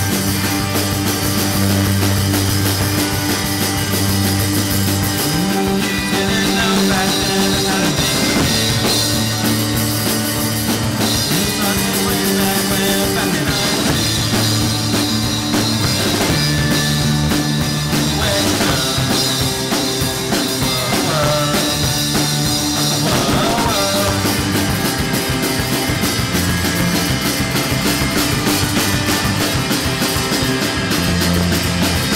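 Live rock band playing loud and without a break: electric guitar over a drum kit.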